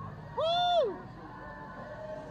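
A spectator gives one short, high-pitched 'woo!' whoop about half a second in, the pitch rising then falling, to cheer on runners. Low crowd and street noise lies under it.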